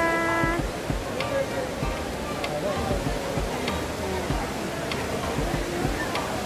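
Steady rushing of an indoor waterfall cascading down a wall, under a murmur of crowd voices.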